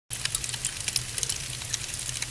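Fire sound effect: burning flames with a steady rushing roar and many irregular crackles.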